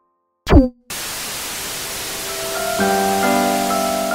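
Silence, then a loud, short electronic sweep falling steeply in pitch, followed by a steady hiss of static. Synth notes enter over the hiss and stack up into a held chord as a logo sting near the end.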